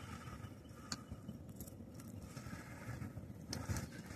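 Faint handling of a cast net: the rope and wet mesh being hauled hand over hand into a small boat, with two small clicks, one about a second in and one near the end, over a low outdoor rumble.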